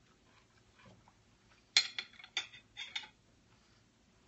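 A person huffing short, sharp breaths in and out around a mouthful of food that is too hot: four or five quick, hissy puffs about two seconds in, the first the loudest.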